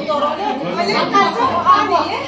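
People talking over one another: several voices in conversational chatter.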